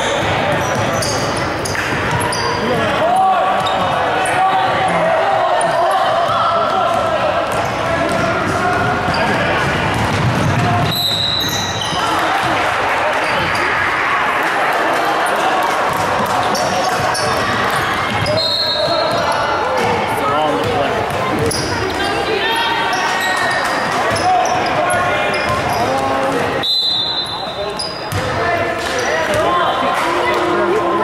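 Basketball dribbled on a hardwood gym floor during a youth game, with players' and spectators' voices echoing in the large hall. Three short, high referee whistle blasts sound at intervals.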